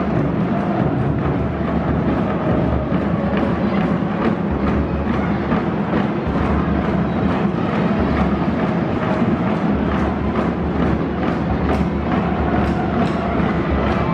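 Loud music with timpani and drums played over a stadium's public-address system, steady throughout with a constant low rumble beneath.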